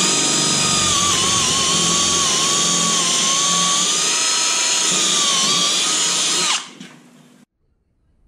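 Handheld power drill with a 10 mm bit boring through 12 mm plywood: a steady motor whine whose pitch dips slightly as the bit bites. It stops suddenly about six and a half seconds in.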